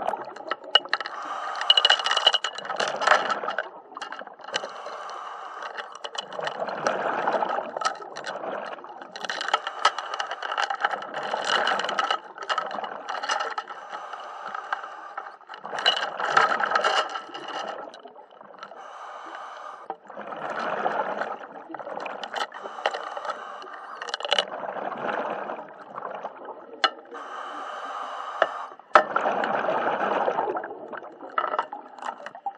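Scuba diver breathing underwater through a regulator: noisy, bubbly surges about every four to five seconds, with scattered sharp clicks between them.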